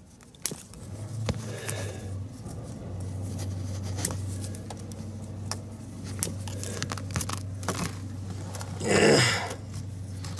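Nylon zip ties being pulled tight around a cigarette-lighter plug and socket, with scattered small clicks and scrapes. A steady low hum sets in about a second in, and there is a short louder rustle near the end.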